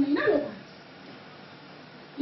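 A woman's voice amplified through a microphone and PA, with a short drawn-out utterance in the first half second. It is followed by a pause of low, steady background noise.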